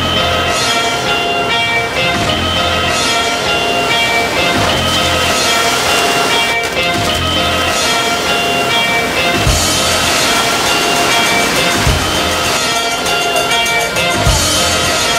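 Background music with held notes over a low, regular beat.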